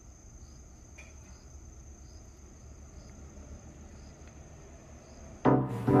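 Quiet outdoor summer ambience: an insect's steady high-pitched drone with soft pulses about once a second, over a low rumble. About five and a half seconds in, the drone cuts off and loud music starts.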